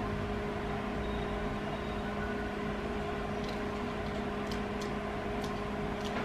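Microwave oven running with a steady electric hum while it heats a bowl of food, with a few faint light ticks in the second half.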